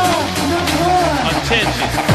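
Early hardcore gabber track in a breakdown: the fast distorted kick drum drops out, leaving a sampled voice with gliding pitch over a sustained bass tone, and the kick comes back right at the end.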